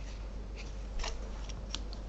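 A clear plastic sewing ruler being picked up and laid down on a paper pattern on the table: a few quiet, light clicks and taps.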